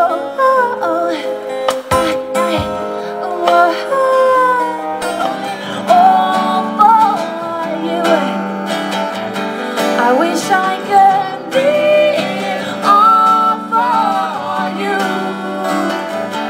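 Live pop performance: a woman singing a gliding melody into a microphone over strummed guitar chords, played through a PA system.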